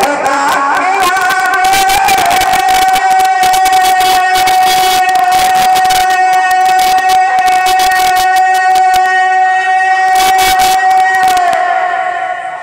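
A male naat reciter singing over a loud PA, holding one long steady note for about ten seconds before letting it go near the end. Dense crackling and clicking runs throughout.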